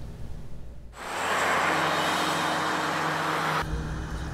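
Steady road traffic noise, an even rush of passing vehicles, starting about a second in after a moment of quiet room tone and cutting off abruptly near the end.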